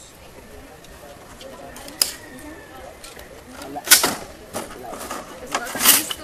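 Metal rifle parts clacking and clicking as they are handled and fitted together on a table. There is a sharp click about two seconds in and louder clacks around four seconds and again just before the end, over faint background voices.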